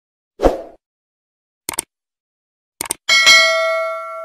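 Subscribe-button animation sound effect: a soft thump, two quick click sounds, then a bell ding about three seconds in that rings on and fades slowly.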